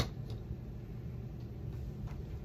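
Paper being handled: a short sharp crackle right at the start as a small sticker-backed paper piece is peeled, then faint light ticks of paper being pressed onto a journal page, over a steady low hum.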